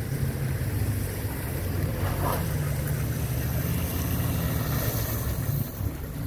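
Pickup truck engines running steadily under load, a low even drone, as one truck tows a stuck Ram 1500 pickup up out of the mud on a tow strap.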